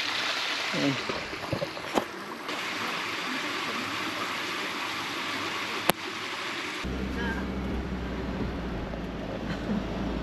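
Rain falling with a steady hiss, with a sharp click about six seconds in. About seven seconds in it cuts to the steady low hum of a car driving, the rain still hissing over it.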